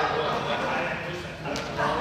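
Indistinct chatter of several people in a large sports hall, with one short sharp tap about one and a half seconds in.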